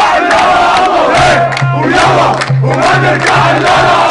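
Large crowd of protesters chanting and shouting slogans together. From about a second in, a low pulsing tone sounds beneath the voices.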